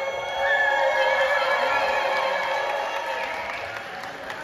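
A live band's final chord held and slowly fading at the end of a pop song, with no drums or bass under it, and some crowd cheering and applause mixed in.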